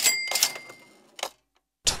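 Cash register "ka-ching" sound effect: a sharp mechanical strike with a bell ringing and fading over about a second, some clatter, and a last click just over a second in.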